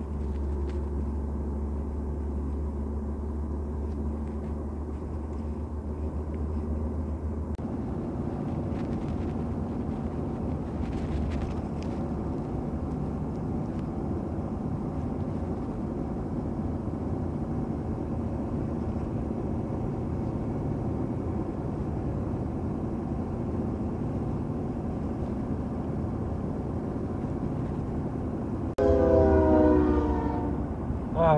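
Vehicle cabin noise while driving along a highway: engine and tyre drone, with a heavy low hum in the first several seconds. Just before the end a horn blows loudly, several notes at once.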